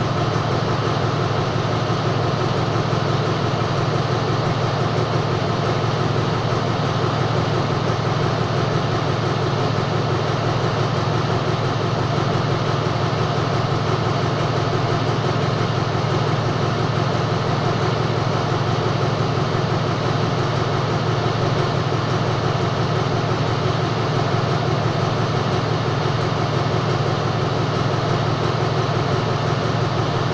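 Diesel locomotive engine idling steadily with a low, even hum while the train stands at the platform.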